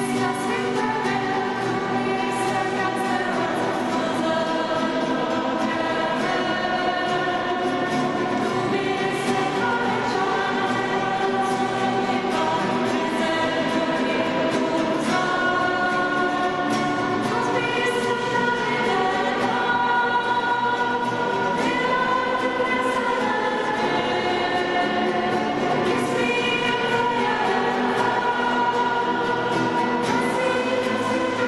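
Several voices singing a worship song together, accompanied by acoustic guitars, continuing at an even level.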